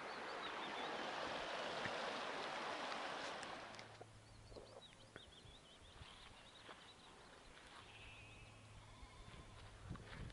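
A brook runs with a steady rush for the first few seconds, then drops away to quiet countryside with faint bird chirps and distant sheep bleating.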